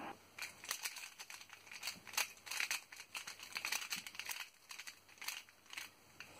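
X-Man Volt Square-1 puzzle being handled and turned, its plastic layers giving off a scattered run of faint clicks and rattles.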